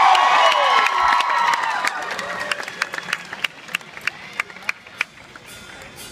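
Concert audience cheering and whooping loudly, dying away after about two seconds into scattered claps.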